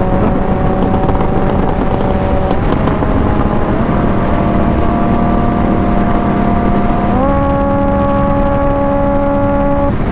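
Kawasaki Ninja H2's supercharged inline-four running at steady highway speed under heavy wind rush. Its note dips slightly about two and a half seconds in and steps up about seven seconds in.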